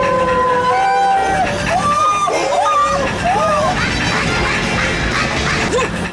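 A man howling like a dog: long, slowly falling howls over the first second and a half, then shorter wavering yelps and cries.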